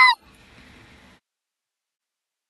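A brief, high voice squeal rising sharply in pitch, over within the first fifth of a second. Faint hiss follows for about a second, then the sound cuts to dead silence.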